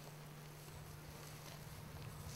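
Quiet outdoor background: a faint even hiss with a steady low hum and no distinct event.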